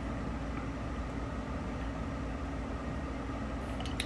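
Steady low hum of background noise, unchanging, with no distinct events.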